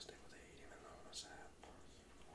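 A man whispering faintly under his breath, with one sharp hissing 's' about a second in.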